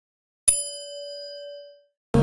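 A single notification-bell ding sound effect, struck once about half a second in, its clear tone ringing on and fading away over about a second and a half.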